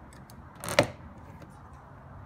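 The front hood of a GEM electric car being shut: a short swell, then a single sharp knock about three-quarters of a second in.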